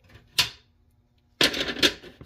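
Rigid plastic rings of a Herbsnow herb dryer clacking as they are stacked onto the base: one sharp click about half a second in, then a quick run of clattering knocks near the end.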